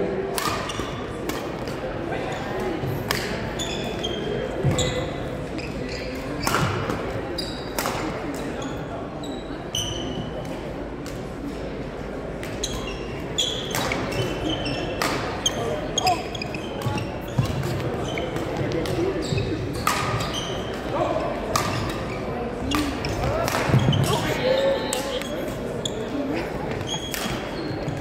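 Badminton doubles rally: a string of sharp racket hits on the shuttlecock, irregularly spaced, mixed with short squeaks of court shoes on the wooden gym floor, in a large gym hall.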